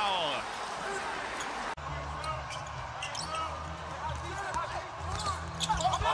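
A basketball being dribbled on a hardwood court, several separate bounces, with faint player voices and a steady low hum underneath.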